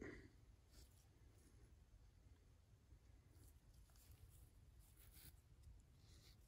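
Near silence, with a few faint soft rustles from a gloved finger smearing white lithium grease along the printer's Z-axis lead screw.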